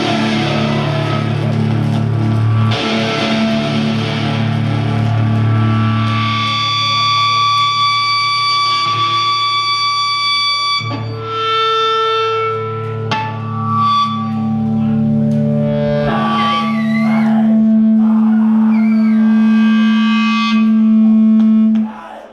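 Live metal band playing loud through the PA, led by heavily distorted electric guitar. After a few seconds of full-band playing, the guitars hold long ringing chords with high sustained tones over them, then one long low note that cuts off suddenly at the end.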